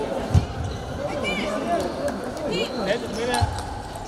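Table-tennis balls knocking, two sharp hits about three seconds apart, over steady chatter of voices in a sports hall, with a couple of brief shoe squeaks on the wooden floor.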